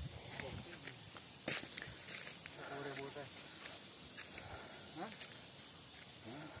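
Footsteps on a dirt path with scattered light clicks and rustles, and one sharp click about one and a half seconds in, the loudest sound here. Faint voices talk briefly in the background.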